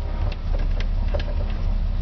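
1983 Chevrolet Silverado's engine idling with a steady low rumble, with a few faint clicks over it.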